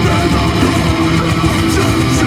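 Metalcore band playing live and loud through an outdoor stage PA: distorted electric guitars, bass and drums, heard from the crowd.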